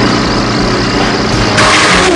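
Loud mechanical sound effect for a toy drill tank advancing, a dense steady rumble with a low hum and a rising rush near the end.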